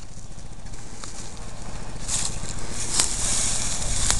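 Hay and nylon netting rustling as a coiled rope strap is pushed into a hay net on a round bale, starting about halfway in, with a couple of sharp clicks near the end, over a low steady rumble.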